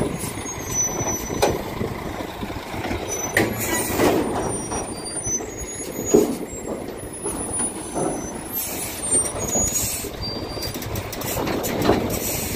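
Cattle truck with a triple-axle livestock trailer running slowly past close by, engine running with knocks and rattles from the trailer and a few short air-brake hisses.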